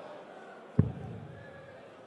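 A single dart thudding into a bristle dartboard about a second in, over a low murmur from the arena crowd.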